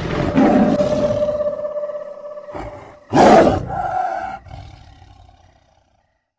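Tiger roar, twice: a long roar fading away over the first couple of seconds, then a louder one about three seconds in that dies away before the end.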